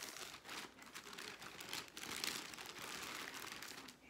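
Crinkling and rustling as clothing and its plastic wrapping are handled, an uneven run of short crackles.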